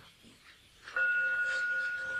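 A meditation bell is struck once, about a second in, after a moment of near silence. It rings on in a steady, clear tone with higher overtones.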